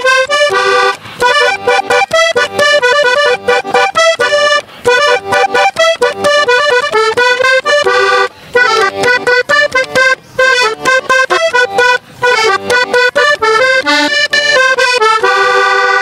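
Diatonic button accordion played alone: quick melodic runs and chords of a vallenato-style introduction to a song, with short breaks between phrases.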